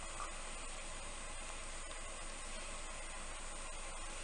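Steady, even background hiss with no distinct events: the recording's noise floor or room tone.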